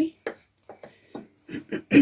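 Paintbrush knocking against the inside of a cup of rinse water: a series of short, light taps spaced irregularly. A voice, the start of a cough, comes in near the end.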